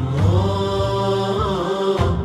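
Interlude music: a chanting voice holds a long note over a low sustained drone. The drone drops away shortly before the end.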